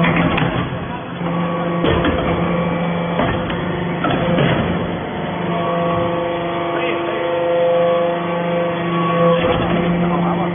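Hydraulic power unit of a metal-chip briquetting press running: an electric motor driving the hydraulic pump, a steady hum with higher steady tones above it.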